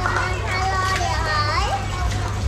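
A young child's high voice chattering, with a rising call about one and a half seconds in, over a steady low hum.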